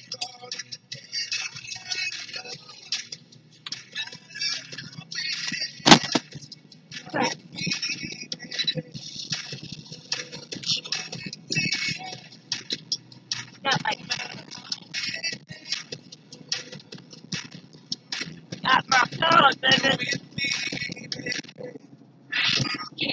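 Car radio playing inside a moving car, indistinct voices and music, with a sharp knock about six seconds in.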